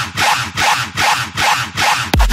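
Electronic dance music: a harsh, rasping synth sound pulsing about four times a second, with little deep bass, in a dubstep mashup.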